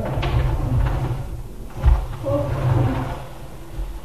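A low rumbling with one heavy thud about two seconds in, and faint voices in the background.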